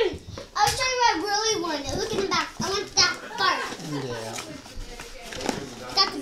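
Young children's high-pitched voices chattering, with no clear words.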